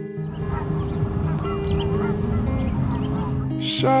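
A flock of geese honking, many short calls overlapping, over soft, steady background music. Sung vocals come in near the end.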